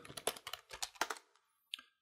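Quick typing on a computer keyboard for about a second, a short name being keyed in, then a single further click near the end.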